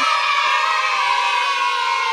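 A voice holding one long drawn-out note, its pitch slowly falling.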